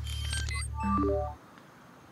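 Electronic music sting: a low buzzing synth drone with short beeps, closing with a quick run of rising beeps. It cuts off about one and a half seconds in.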